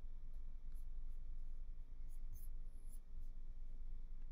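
A few faint, short clicks from computer controls over a steady low room hum, bunched about two to three seconds in.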